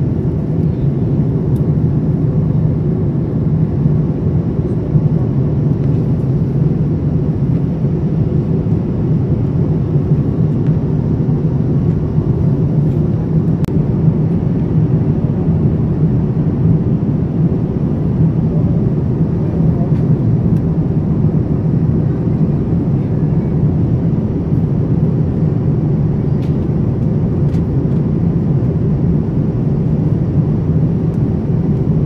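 Steady, unchanging drone of airliner cabin noise at cruise: engine and airflow rumble heard from inside the cabin, low-pitched and even throughout.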